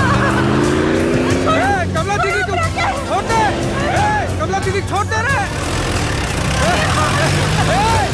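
Film background score of repeated swooping tones over a regular percussive tick. In the first second and a half a truck engine rises in pitch as it speeds past, and another rising engine note comes near the end.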